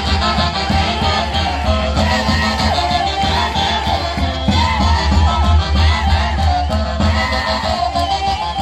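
Live band playing Andean Santiago festival music: wavering melody lines over a steady, driving bass beat.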